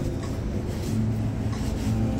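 A steady low motor hum over a rumbling noise, with a short click at the start.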